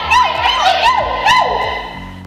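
A wavering, siren-like tone swooping up and down about three times a second, then holding one steady note that fades away, over a low background music bed.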